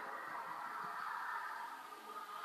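A long, steady sniff through the nose at a glass of blonde ale, smelling its aroma.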